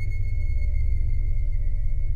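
Eerie background score: a deep, steady drone with a thin, steady high tone held above it.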